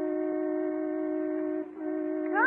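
Car horn sound effect honking in one long, steady blast that breaks off briefly near the end and starts again: a driver leaning on the horn because his driveway is blocked.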